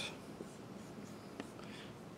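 Dry-erase marker drawing short lines on a small whiteboard: faint marker strokes with two light taps of the tip on the board.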